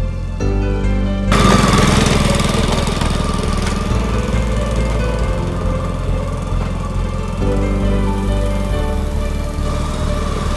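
Background music, over which a Ryan gas-powered core aerator's small engine starts running suddenly about a second in, as the machine works across the lawn pulling plugs.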